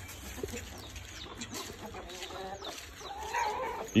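Chickens clucking faintly, with a longer call near the end and a few light scuffs.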